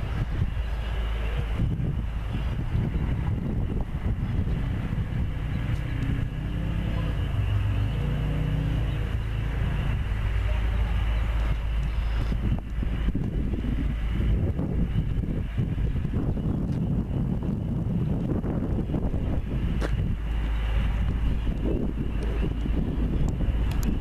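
Wind rumbling on the microphone, with an engine running nearby whose pitch wavers.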